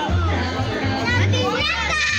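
Children shouting and playing over loud party music with a pulsing bass line.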